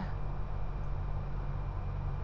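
A steady low hum with a faint even hiss over it, with no other event standing out.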